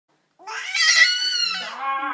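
Baby fussing with one long, whiny cry that starts about half a second in and slides down in pitch toward the end, demanding kisses.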